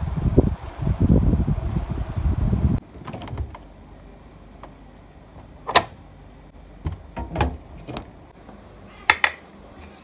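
Low rumble of wind on the microphone for about the first three seconds. It gives way to a quieter stretch with a few sharp clicks and knocks as a refrigerator door is opened and things are handled: one sharp knock about six seconds in, another about a second and a half later, and a quick double click near the end.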